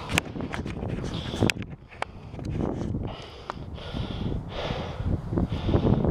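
A man doing burpees on grass: uneven thuds and scuffs as his hands and feet drop to and land on the turf, with a few sharp clicks.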